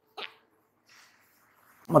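A man's single short hiccup, about a fifth of a second in, followed by near quiet before his speech resumes at the very end.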